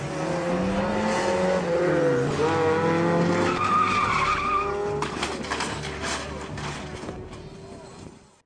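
Sports car engine revving and its tyres squealing as it spins out on an autocross course, the revs dipping about two seconds in and climbing again. About five seconds in comes a burst of clattering knocks, and then the sound fades.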